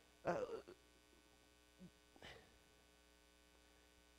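Faint, steady electrical mains hum, with a man's brief 'uh' at the start and a faint short sound about two seconds in.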